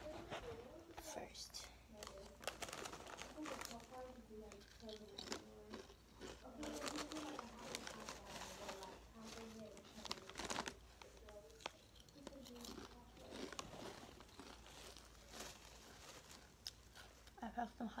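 A bag of SunChips crinkling as it is handled, with chips being bitten and crunched. Many short crackles run throughout.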